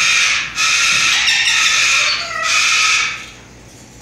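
Slender-billed corella screeching close to the microphone: three long, harsh calls in a row with short breaks between them, stopping about three seconds in.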